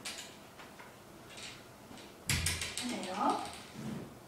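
A door or gate being unlatched and opened: a sudden metallic rattle and clatter about halfway through.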